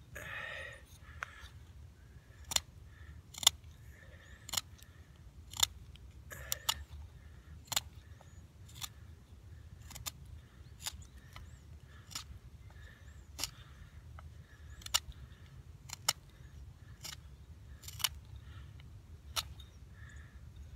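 Knife shaving the tip of a yucca spindle, short sharp cuts about once a second, reshaping a point that had formed on the drill.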